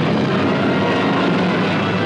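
Rocket blast sound effect from an old film soundtrack: a loud, steady rushing rumble with no tune, heaviest in the low end.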